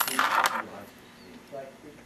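A brief metallic clink and rattle in the first half-second as small metal fly-tying tools, a whip finisher and scissors, are handled.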